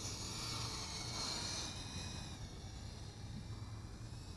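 GoolRC G85 micro FPV racing quadcopter's 1106 6000KV brushless motors and five-bladed props whining at a distance as it takes off, fading after about two seconds.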